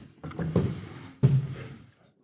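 Handling noise on the lectern microphone while a laptop is being set up: two dull bumps with a low rumble, the second, about a second in, the louder.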